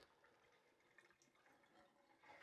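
Near silence, with one faint drip of rinse water about a second in as the just-rinsed tintype plate drains over the tray.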